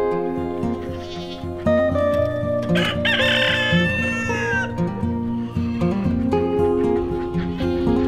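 A rooster crows once, about three seconds in, a single drawn-out call that falls away at its end, over background music of sustained notes.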